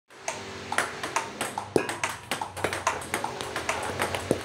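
Table tennis balls clicking in quick succession, about five a second, as they bounce on the table and are struck with a paddle in multiball forehand topspin practice. A faint steady low hum runs underneath.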